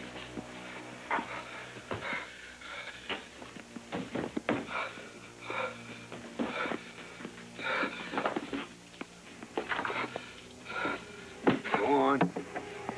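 A man breathing hard in short gasps, about one a second, over background film music.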